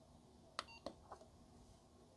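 Uniden SDS100 scanner's short key beep as its top knob is pressed to select a menu item, with a small click from the knob just after; both faint.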